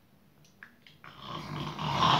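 A harsh, raspy growl that starts about a second in and swells steadily louder.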